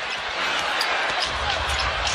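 Basketball being dribbled on a hardwood court over steady arena crowd noise, with a low rumble coming into the crowd sound about halfway through.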